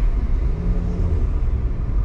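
Low, steady rumble of a car being driven through city traffic: road and engine noise.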